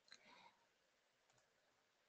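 Near silence, with a few faint computer-mouse clicks.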